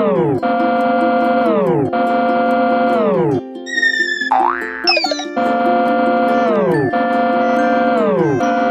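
Cartoon music and sound effects: a pitched synth tone repeats about every one and a half seconds, each note sliding down in pitch as it ends. Around the middle the tones break off for whistling glides, one of which swoops up and then down.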